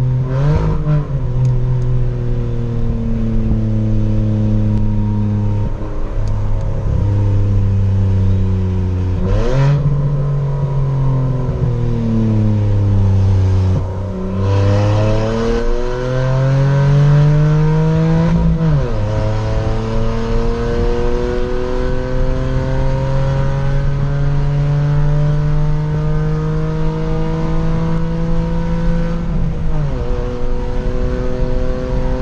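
Hyundai HB20's 1.0 three-cylinder engine heard from inside the cabin, its exhaust running through a cutout diffuser with the valve open. The engine note sinks as the car slows through the first half, then climbs under acceleration, with a sudden drop at an upshift about two-thirds in and a long steady rise to the end.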